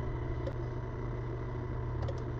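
A steady low hum with a faint hiss over it, even and unchanging throughout.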